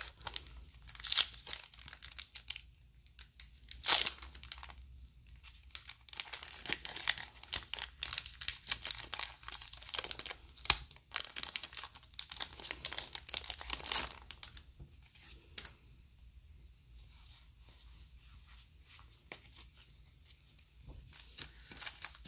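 Foil wrapper of a Pokémon TCG booster pack being torn open and crinkled: a long run of sharp crackles and rips, thinning after about fourteen seconds to quieter rustling as the pack is handled.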